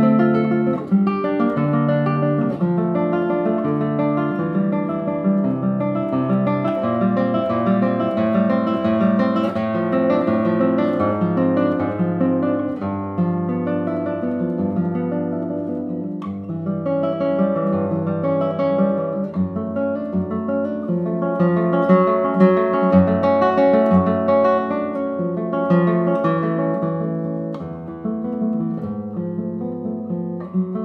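Solo classical guitar played fingerstyle: a continuous run of plucked notes and chords that changes constantly in pitch, with a brief lull about halfway through.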